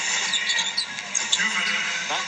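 Basketball shoes squeaking on a hardwood court, several short high chirps, over the steady noise of an arena crowd.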